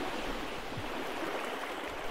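Steady, even rushing of a small mountain creek's running water.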